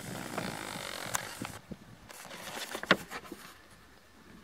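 Faint outdoor background: a soft hiss that drops away after about a second and a half, with a few scattered small clicks and knocks, one louder near the end.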